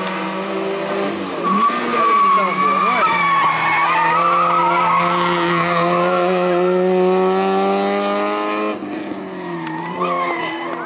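Peugeot hillclimb race car's engine at full throttle up a mountain road, its pitch climbing slowly for several seconds and then dropping sharply near the end as the driver lifts or shifts. The tyres squeal through the corners in the first few seconds.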